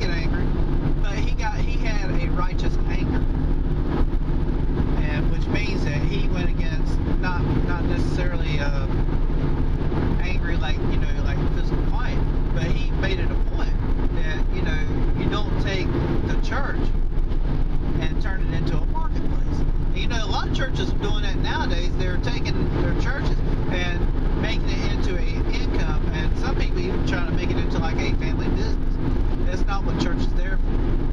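A man's voice talking over the steady low drone of a moving car, heard from inside the cabin.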